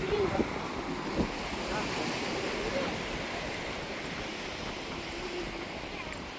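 Surf washing onto a sandy beach with steady wind on the microphone, and one brief knock about a second in.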